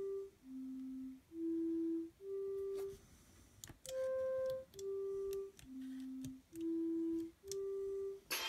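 Electronic Simon-game tones from an Arduino-driven toy: clean steady beeps, each about two-thirds of a second, stepping among four pitches. After a short pause with a few button clicks about three seconds in, the same five-note tune plays again as the buttons are pressed, the player replaying the full five-note sequence that wins the game.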